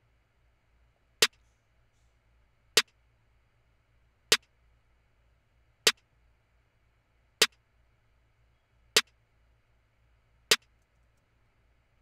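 Programmed trap snare sample played alone from FL Studio: one sharp hit about every one and a half seconds, once a bar at 155 BPM, seven hits in all.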